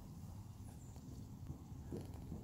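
Horse trotting on sand arena footing: faint, dull hoofbeats in an uneven run.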